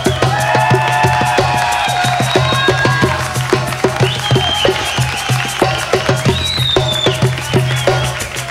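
A rock band playing an acoustic arrangement live, in an instrumental passage without singing: a busy percussion beat under sustained melodic lines that bend in pitch.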